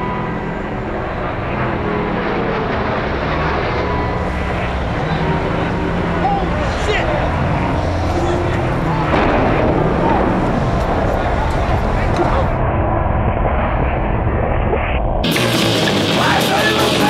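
A loud, dense wash of noise with voices mixed through it. About a second before the end it cuts suddenly to loud punk rock with shouted vocals.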